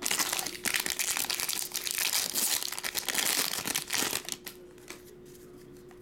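Foil wrapper of a Topps Series 1 jumbo trading-card pack being torn open and crinkled, a dense crackling that lasts about four seconds and then stops.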